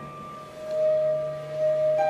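Quiet contemporary chamber music: a high ringing note fades away, then a soft, pure held tone enters about half a second in and sustains over a faint low drone.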